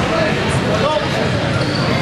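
Crowd voices in a large hall: overlapping chatter and calls from spectators and coaches around a grappling match, with no single sound standing out.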